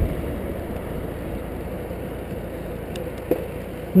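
Steady road and wind noise from a moving recumbent cycle, with a car that has just overtaken drawing away ahead. There is a brief knock a little after three seconds in.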